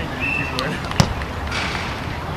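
Voices of people on an outdoor sand volleyball court, with one sharp slap about a second in.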